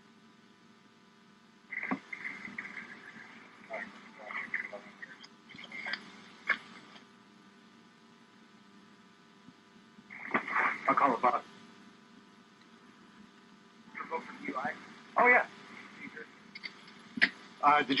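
Police radio chatter: muffled, band-limited voices in three stretches of transmission, with a steady electrical hum in the pauses.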